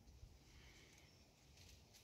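Near silence: faint outdoor background with a low, soft rumble.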